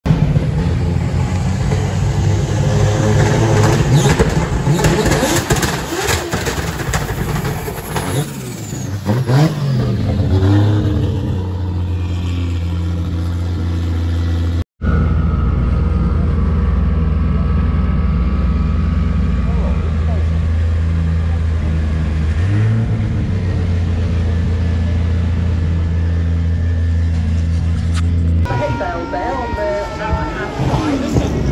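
Drift car engines revving, their pitch rising and falling, then after a cut a drift car's engine idling with a steady deep hum that rises slightly in pitch about two-thirds of the way through and stops near the end.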